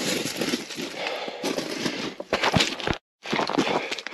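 Footsteps crunching and sliding on loose rock scree while walking downhill with small steps, with a few sharp knocks of stones. The sound cuts out briefly about three seconds in.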